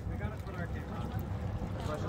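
Steady low rumble of background noise aboard a boat, with faint murmured voices; no splash or impact.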